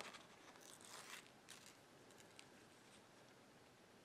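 Near silence, with faint paper rustles in the first second or so as a peel-and-stick decal sheet is peeled and handled.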